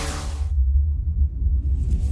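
Deep cinematic rumble, a low sub-bass drone from a trailer sound effect, as the music fades away. The higher sounds drop out about half a second in, and a faint airy swell comes back in near the end.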